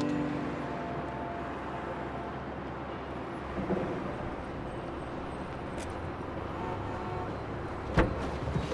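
Steady city road-traffic noise: a dense, even hum of many vehicles. The last notes of the preceding music fade out in the first second or so.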